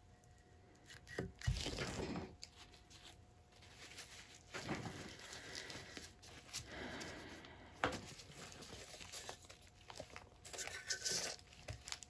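Quiet rustling and crinkling handling noise in several bursts as nitrile-gloved hands move about a paint-covered tile, with a dull knock about a second and a half in, when the tile is set down on the board.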